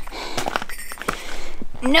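A hiker walking with a handheld camera: footsteps and rustling of clothing and gear, with a few soft irregular knocks. Near the end a woman's voice says "nope" and laughs.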